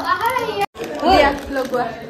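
Speech only: lively voices talking, with a sudden brief dropout under a second in.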